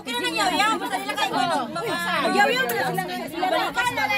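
Only speech: several people talking over one another in lively conversation.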